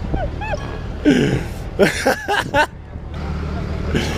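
People's voices talking in short bursts, unclear and off to the side, over a steady low rumble.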